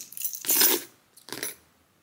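Two short handling noises with a metallic, clinking quality, a louder one about half a second in and a shorter one near a second and a half.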